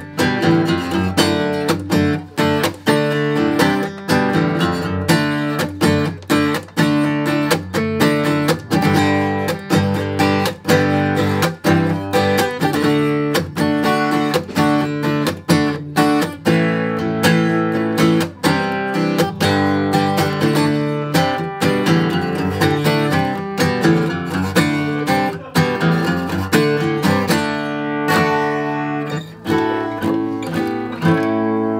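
A 2018 Martin D-41 rosewood dreadnought acoustic guitar strummed hard in a steady, driving rhythm of full chords.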